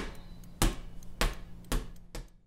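A spoked wheel bouncing on asphalt. It hits the ground about every half second, the bounces coming closer together and fainter as it settles.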